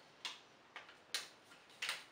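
Four short, soft crackles from a small paper perfume sample sachet being handled, spread about half a second apart.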